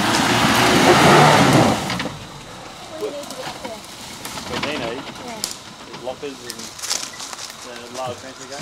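Suzuki Sierra 4x4 engine revving up under load as it drives across a slippery grassy slope, building to a peak about a second in and dropping away by about two seconds. After that it carries on at a low level under indistinct voices.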